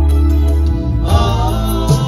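Live band music amplified through a PA: an electronic keyboard holding a chord over a heavy bass. A man's voice comes in singing into a microphone about a second in.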